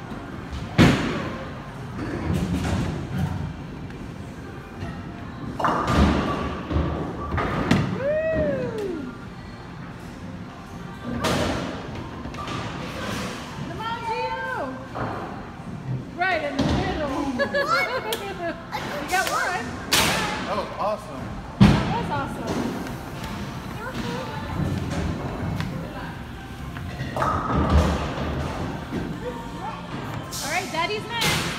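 Bowling alley: several heavy thuds of bowling balls hitting the lane, the loudest about two-thirds of the way through, over background voices and music.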